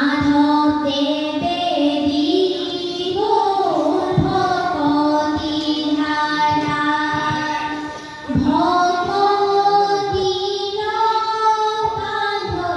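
Group of children singing dihanam, Assamese devotional chant in praise of God, in unison with long held notes that glide slowly in pitch. The voices break briefly about eight seconds in, then come back in on a rising note.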